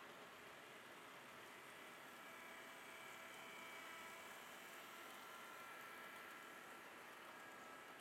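Faint running of an HO scale model train passing close by: a thin motor whine of a few steady tones over a low hiss, swelling slightly in the middle as the locomotives go past, then easing as the wagons follow.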